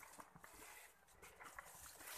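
Near silence: faint footsteps and brushing against plants on a dirt path through vegetation.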